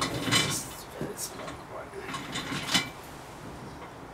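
Irregular knocks, clatter and rustling from paint supplies being handled as a palette and brush are picked up, the loudest clatter in the first half second and again near the three-second mark.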